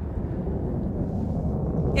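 New Shepard booster's BE-3 rocket engine heard from far off: a steady low rumbling noise with almost nothing in the high end.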